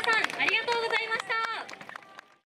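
High-pitched voices calling out, broken by many sharp clicks, all fading out near the end.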